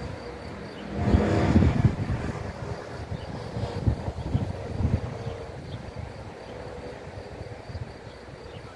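Wind buffeting the microphone in uneven low rumbles, with a louder rush about a second in that lasts about a second.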